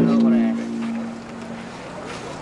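A large taiko drum on a Banshu festival yatai, struck once just before, ringing with a deep pitched tone that fades slowly over about two seconds. Voices from the crowd are heard under it.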